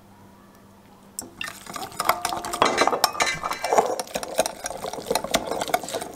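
A wire whisk rapidly beating a thick pepper-paste and yogurt sauce in a glass bowl, starting about a second in. Its metal tines click and scrape quickly against the glass.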